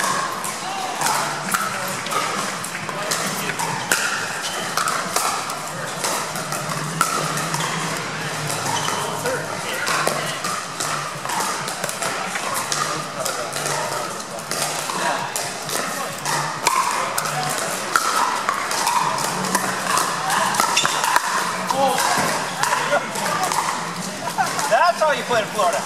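Pickleball paddles hitting plastic balls: many sharp pops scattered throughout, from several courts at once, over a steady babble of crowd and player voices in a large hall.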